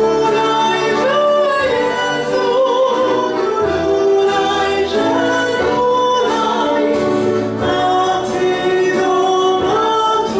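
A woman singing solo in a classical style, with vibrato on long held notes, over instrumental accompaniment.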